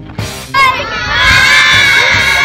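A group of children shouting and cheering together. The loud, high-pitched yell breaks out about half a second in and is held.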